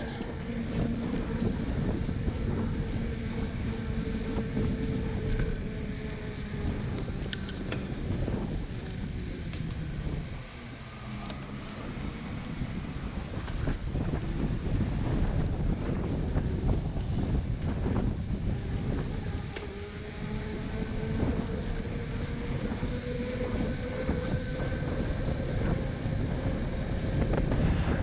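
Wind rushing over the microphone of a camera on a moving bicycle, with the rumble of tyres on asphalt. It quietens briefly about ten seconds in.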